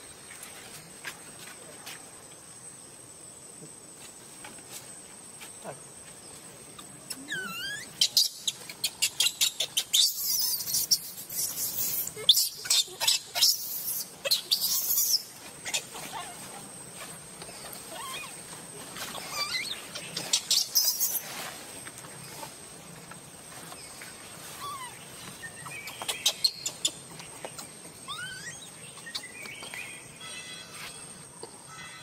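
Steady high insect drone with loud bouts of dry-leaf rustling and crackling from about a quarter to half way through, again near two-thirds and briefly near the end, mixed with short high rising squeaks that fit an infant macaque's calls.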